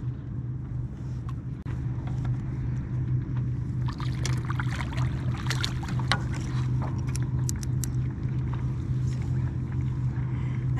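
Steady low drone of a motorboat engine running in the channel, with a flurry of sharp clicks and small knocks from about four to eight seconds in.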